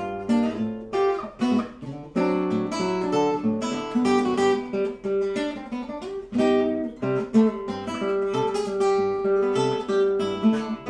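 Nylon-string classical guitar played fingerstyle: a melody of plucked notes over a moving bass line, each note ringing and fading.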